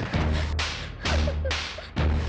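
Dramatic film sound effects: a run of whooshing, whip-like hits about every half second over a deep bass rumble.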